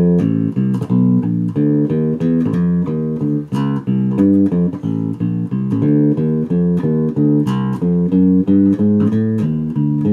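Six-string Warwick Streamer LX electric bass played fingerstyle in a 12-bar blues walking line of short, evenly paced notes, about two a second, with percussive muted dead notes slipped in between. The dead notes are played to give the electric bass the feel of an upright.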